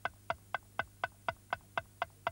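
Countdown ticking sound effect, a clock-like tick about four times a second, marking the seconds of a 10-second puzzle.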